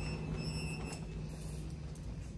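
Steady low background hum, with a faint thin high-pitched tone for under a second near the start.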